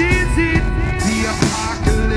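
Live rock band playing loudly: electric guitars and drums, with a voice singing gliding notes over them in the first half.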